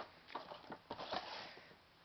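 Faint, short rustling and scraping noises from a cardboard box of firework mortar shells being handled and lifted.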